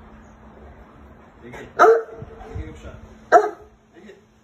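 A large dog barking twice, loud single barks about a second and a half apart.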